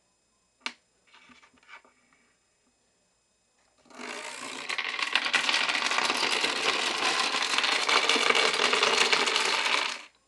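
Wooden dominoes toppling: a single click under a second in, a few light clacks as a row falls, then from about four seconds a loud, dense clatter of wooden domino blocks as a stacked wall of them collapses. The clatter stops suddenly.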